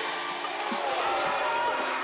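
Basketball game sound in a gymnasium: a steady murmur of crowd and voices, with no music.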